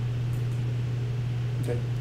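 Steady low hum with a faint hiss: room tone, with no other event. A brief spoken 'OK' comes near the end.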